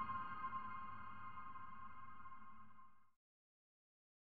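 Closing ambient music: a sustained ringing tone with overtones, slowly fading and stopping about three seconds in.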